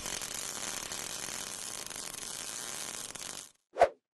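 Steady crackling hiss of a welding-arc sound effect that cuts off sharply about three and a half seconds in, followed by a short hit just before the end.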